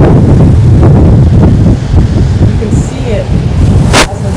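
Wind buffeting the microphone: a loud, unsteady low rumble, with faint snatches of a woman's speech under it. A sharp click near the end.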